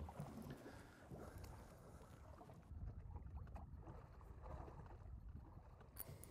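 Near silence on a small fishing boat: a faint low rumble with light water noise from a chop slapping the hull.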